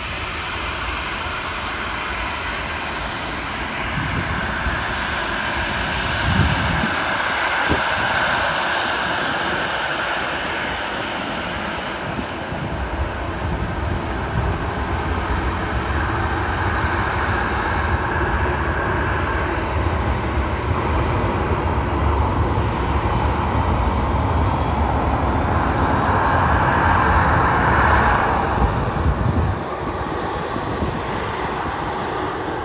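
Jet airliner engines at taxi power: a steady whine over a low rumble, swelling louder near the end.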